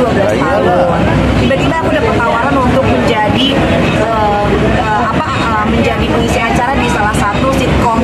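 A woman talking continuously inside a vehicle cabin, with a steady low rumble underneath.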